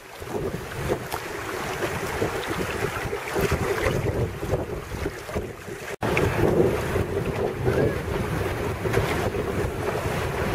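Wind buffeting the microphone over the rush and splash of choppy water around a sailing duck punt. The sound breaks off for an instant about six seconds in, then carries on as before.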